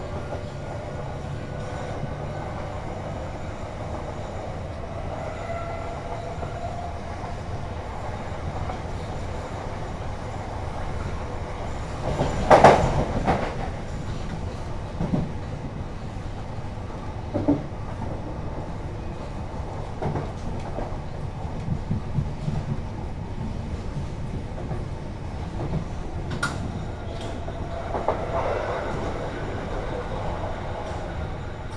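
A Southeastern Class 376 electric multiple unit running at speed, heard from inside the carriage: a steady rumble of wheels on rail, with a faint whine rising in pitch in the first few seconds. About twelve seconds in the wheels give a loud clatter, followed by several lighter knocks.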